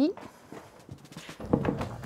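A heavy wooden sideboard is lowered onto a concrete floor. There are shuffling footsteps and a few light knocks, and a low thud about one and a half seconds in.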